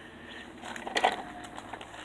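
A faint, short scuff about a second in as a foot kicks at the kickstand of a Razor kick scooter, over low background noise.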